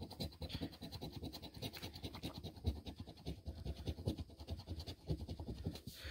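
A large coin scraping the coating off a scratch-off lottery ticket in quick, repeated strokes.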